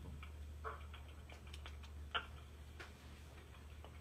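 A quiet room with a steady low hum and a handful of faint, irregularly spaced clicks, the loudest about two seconds in.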